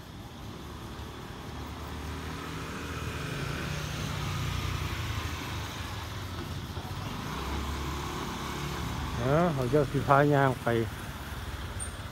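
Motorcycle and street traffic engines running in the street below, with a low engine hum that grows louder about four to five seconds in and then eases.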